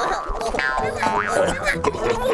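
Cartoon brawl sound effects: a quick run of short springy sounds gliding up and down in pitch, over background music.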